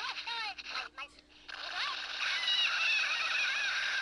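High-pitched, squeaky voice-like sounds that warble up and down, played through a handheld console's small speaker as the soundtrack of a stick-figure animation. They break off briefly about a second in, then return as a long, wavering squeal.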